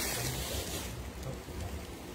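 Rustling of a silky garment being shaken out and unfolded by hand, loudest for about the first second and then fading.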